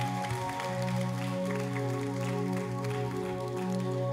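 Worship band playing held, sustained chords with no singing; the chord changes about a second and a half in and again near the end.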